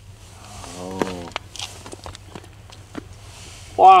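Faint scattered crunches and clicks of boots shifting on snow-covered ice, with a man's low drawn-out vocal sound about a second in and a loud 'wow' at the very end.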